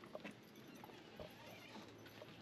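Near silence, with a few faint, soft clicks.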